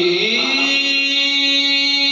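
Man singing a naat into a microphone, sliding up into one long held note.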